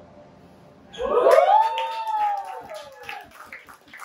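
Audience whooping and clapping: about a second in, several voices break into a long cheer that rises and then falls, with quick hand claps running on under it to the end.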